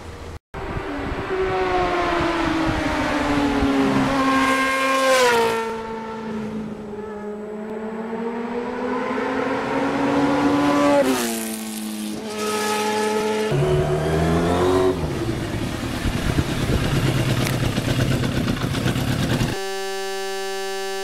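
Kawasaki Ninja 650R parallel-twin engine accelerating through the gears: the pitch climbs, drops sharply at each upshift about 5, 11 and 13 seconds in, then climbs again. Just before the end a steady electronic buzzer tone cuts in.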